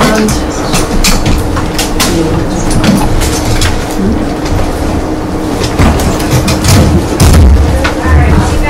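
Sheets of paper rustling and crackling as handouts are passed out and leafed through around a meeting table, with many short sharp crackles over a steady low hum in the room.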